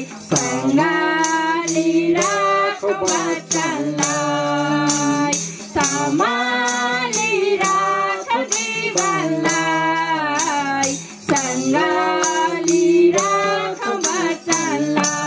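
Young women singing a song into a microphone, with a hand-held tambourine struck in a steady beat and a low steady drone beneath the voices.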